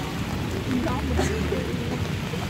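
Steady low engine hum and road noise inside a moving vehicle, with indistinct passenger voices in the background.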